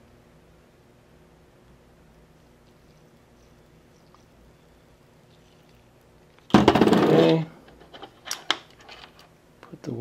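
Soldering-bench handling: a faint steady hum, then a brief loud burst about two-thirds of the way in, followed by several light, sharp metallic clicks as small brass bullet connectors and tweezers are handled.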